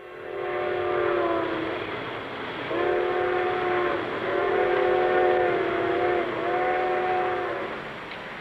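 A multi-tone whistle sounding a chord in four long blasts: one, a short pause, then three more close together, over a steady background hiss.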